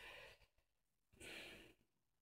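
Near silence, with one faint breath of about half a second a little after the first second.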